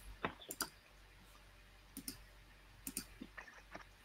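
Faint, irregular clicking at a computer: a few clicks near the start, then small clusters of clicks through the second half.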